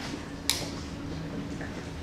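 One sharp, short click about half a second in, over a steady low hum of room ambience.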